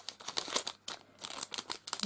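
Clear plastic craft packet crinkling as it is handled, a quick run of crackles and rustles that gets busier in the second half.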